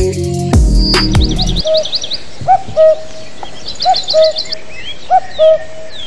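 Electronic music with heavy bass cuts off about a second and a half in. Then bird calls take over: a pair of short, loud whistled notes repeating about every second and a half, with two bursts of fast, high chirps.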